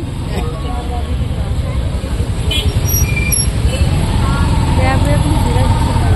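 Dense road traffic heard from a two-wheeler riding in the jam: a steady low rumble of engines that grows louder, with crowd voices and short pitched tones scattered over it, and a held tone in the second half.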